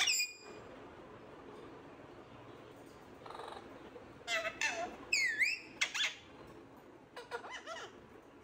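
Pet parakeets (an Alexandrine and an Indian ringneck) calling: one sharp squawk at the start, then a run of squeaky chattering calls with a dipping, rising whistle a little past halfway, and a few more quick squeaks near the end.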